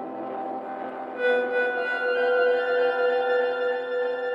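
Slow ambient instrumental music of long, held tones; a new chord comes in about a second in.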